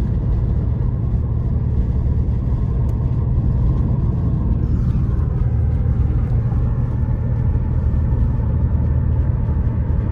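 A car driving along a road, heard from inside the cabin: a steady low rumble of tyre and engine noise.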